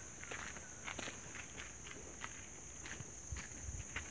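Light, irregular footsteps on a forest path, under a steady high-pitched drone.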